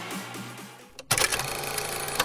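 Background music fading out, then about a second in a sudden fast mechanical clicking rattle, an old film-projector sound effect, running loud and even.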